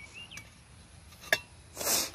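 A single sharp tap about a second and a third in, then a short scraping rush near the end: a garden tool knocking against and pushing a chopped piece of snake across dry dirt.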